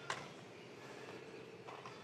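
Inline skate wheels rolling on asphalt, faint, with a faint steady hum under the rolling and a sharp click just after the start.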